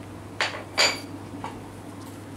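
Small ceramic saucer clinking twice, about half a second apart, as it is jostled while a kitten eats from it. The second knock is louder and rings briefly.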